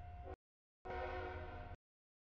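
Low outdoor rumble with a steady hum from a crossing camera's microphone. The sound cuts to dead silence twice as the audio feed drops out. In between, a little under a second in, there is a short stretch of several held tones.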